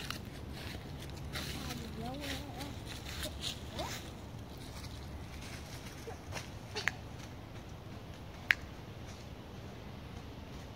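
Footsteps crunching and rustling through dry fallen leaves, with a faint voice about two seconds in. Two sharp clicks follow later, the second the loudest sound.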